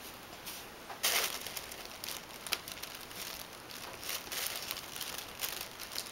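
Faint rustling and a few soft clicks of ribbon being wrapped around a wicker basket, with a louder rustle about a second in.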